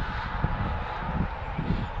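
Footsteps, irregular soft thuds, over a low rumble.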